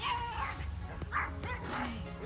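A dog barking a few short times over background music.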